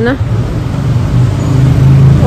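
Low, steady rumble of street traffic picked up on a phone microphone.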